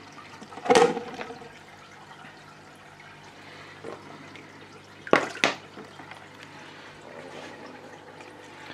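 Water squirted from a squeezed plastic bottle into an aquarium: one sharp burst about a second in and two more close together about five seconds in, with a low steady hum under it.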